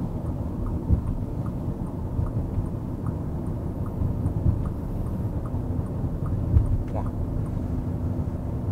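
Steady low rumble of road and engine noise inside the cabin of a Bentley Bentayga cruising on a highway.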